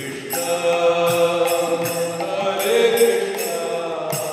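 Devotional kirtan chanting in long, held sung lines that begin about a third of a second in, with small hand cymbals (kartals) and a mridanga drum keeping time underneath.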